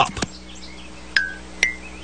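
Two short, high clinking tones about half a second apart, each starting with a click, the second higher in pitch; a faint steady low hum runs underneath. A cartoon sound effect.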